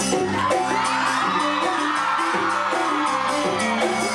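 Live band playing a lively song: electric guitar, bass guitar and a hand drum keeping a quick, steady beat, with a voice singing and the crowd whooping over it.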